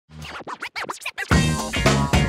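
Short hip-hop style intro jingle: a run of quick turntable-scratch sweeps, then the music comes in loud about a second and a quarter in.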